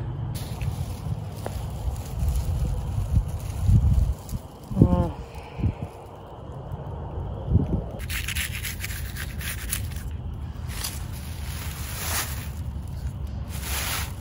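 Scraping and rustling as dog droppings are scooped off grass with a small handheld shovel and a plastic trash bag is handled, with a run of short rasps in the second half over a low rumble.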